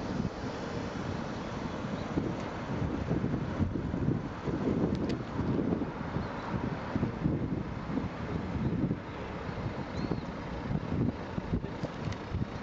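Wind buffeting an old compact camera's built-in microphone in uneven gusts, over the low noise of city street traffic.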